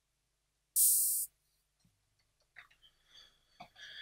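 Korg Volca Beats open hi-hat sounding once, about a second in: a short, bright hiss that dies away within half a second, as a note is entered in the sequencer.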